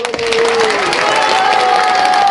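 Theatre audience applauding, a dense steady clapping that breaks out at once at the end of a recitation, with a few voices calling out over it.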